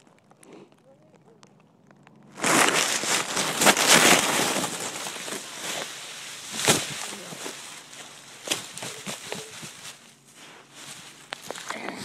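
Dry fallen leaves rustling and crunching as a leaf pile is thrashed through, starting suddenly about two seconds in with dense crackling and sharp snaps, then thinning out toward the end.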